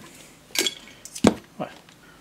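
Tools and a solder reel being set down on a workbench: a light clink about half a second in and a sharper knock a little past one second.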